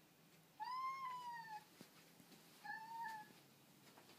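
Tabby cat meowing twice: a long call of about a second that rises and then falls in pitch, then a shorter one.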